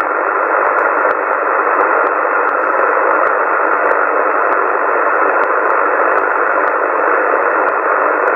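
Yaesu FT-450 transceiver receiving in USB on CB channel 27: a steady, loud rush of static hiss squeezed into the narrow voice-band filter, with no station coming through.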